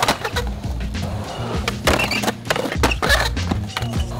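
Background music with a steady beat, over skateboard sounds on concrete: wheels rolling and a few sharp clacks of the board.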